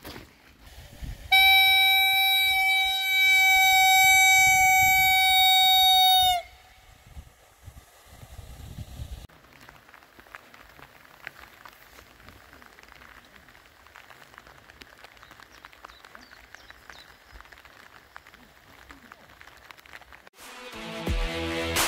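One long horn blast: a single steady tone held for about five seconds, sagging slightly in pitch as it cuts off. Then only faint outdoor background noise.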